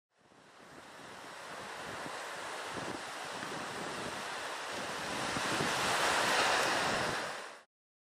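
Ocean surf washing onto a shore: a steady rush that fades in over the first couple of seconds, swells near the end, then fades out.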